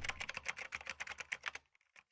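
Fast typing on a computer keyboard: a quick run of keystroke clicks, about a dozen a second, that stops about a second and a half in.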